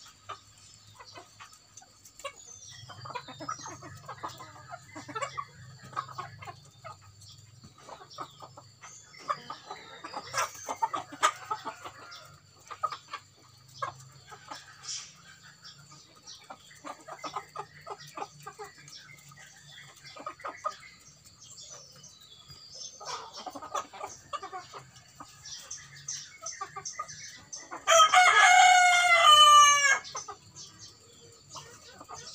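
Ayam kampung super chickens clucking softly with scattered short taps as they feed on grain. Near the end a rooster crows loudly for about two seconds.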